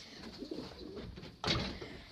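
Domestic pigeons cooing softly in a small loft, with one short, louder noise about one and a half seconds in.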